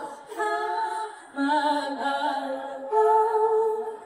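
A woman singing a cappella into a handheld microphone, in three long held phrases with short breaks between them.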